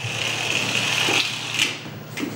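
Small toy car's motor whirring steadily as it runs across a tiled floor, stopping with a light knock about a second and a half in.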